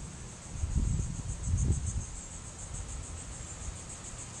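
Insects trilling steadily, a high, finely pulsing buzz, with a low rumble on the microphone between about half a second and two seconds in.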